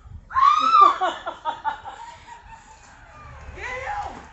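A high-pitched shriek about a quarter second in, breaking into fast, squealing laughter, with another short shriek near the end.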